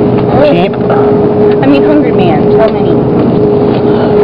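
Indistinct talking and murmuring voices over a steady, unchanging hum at one pitch.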